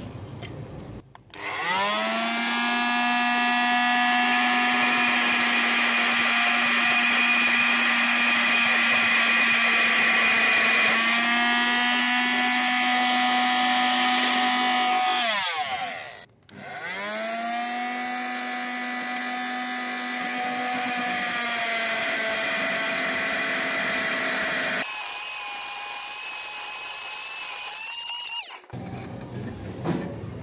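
Oscillating multi-tool running on speed setting one, its toothed blade cutting into a thick iron pipe: a steady buzzing whine that rises in pitch as it starts about a second in. It stops briefly about halfway through and starts again, then turns brighter and hissier for the last few seconds before cutting off.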